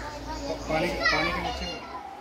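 Children's voices chattering and calling out, with a low steady rumble underneath.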